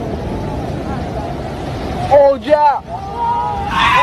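Steady, loud rumble of surf and wind on the microphone, with people's voices shouting in gliding pitches about halfway through and again near the end.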